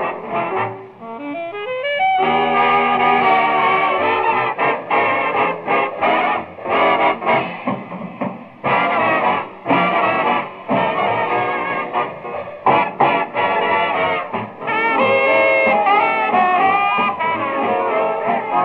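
Swing big band playing an instrumental: a falling run in the first two seconds, then the full band with short punchy brass-section hits, and held brass chords over the last few seconds. The old recording has its highs cut off.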